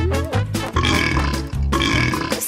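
A burp after a gulp of cola, over cheerful background music with a steady bass beat.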